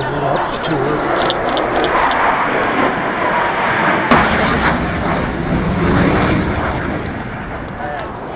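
Blue Angels F/A-18 Hornet jet engines flying past, a loud, steady rushing noise that deepens and grows heavier after a sharp click about four seconds in.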